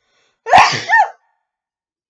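A woman's single loud sneeze about half a second in, in two quick parts.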